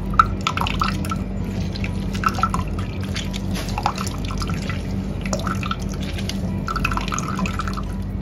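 A thin stream of liquid poured into a plastic jug of blended juice, making a run of small irregular splashes and drips on the surface.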